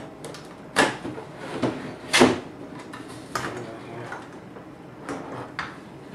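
Stainless steel top panel of a Scotsman ice machine being lifted and slid back off the cabinet: a series of sharp metal knocks and scrapes, the loudest about two seconds in.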